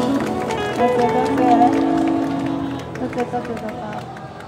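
Live street-band music with electric guitar and voices, growing quieter in the last second or so.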